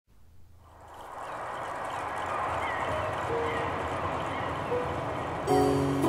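Start of a music track played through a 2A3 single-ended tube amplifier and Scanspeak two-way bookshelf speakers, heard in the room. A noisy ambient intro fades in over the first second, with faint high chirps. Near the end, sustained instrument notes come in as a loud chord.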